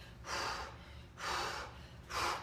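A woman breathing hard from exertion during a set of dumbbell reps: two heavy, noisy breaths about a second apart.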